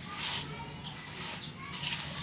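Dry puffed rice (kurmura) mixed with sev and chopped vegetables rustling and crackling as it is tossed with a spatula in a steel bowl.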